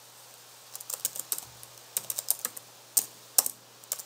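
Typing on a computer keyboard: irregular keystrokes in short runs, starting about a second in.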